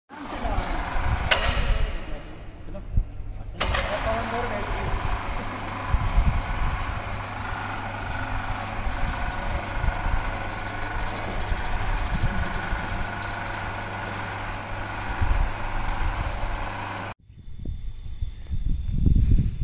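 Indistinct voices over a steady low machine hum, with two sharp knocks in the first few seconds; the sound cuts off abruptly near the end.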